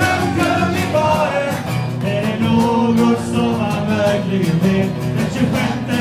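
A song performed live: a man singing over rhythmically strummed guitar.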